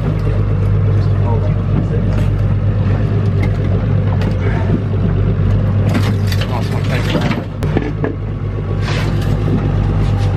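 Evinrude outboard motor idling out of gear with a steady low hum, with scattered knocks and clatter on the boat deck, several of them in the second half.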